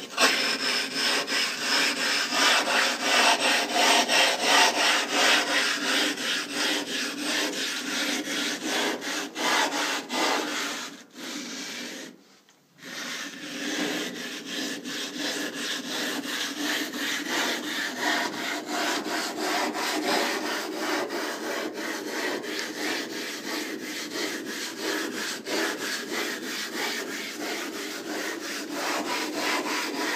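Glass mirror blank ground by hand against a grinding tool with abrasive grit between them: rhythmic back-and-forth scraping strokes, the rough grinding that hollows out the curve of a telescope mirror. The strokes break off briefly about twelve seconds in, then carry on a little quieter.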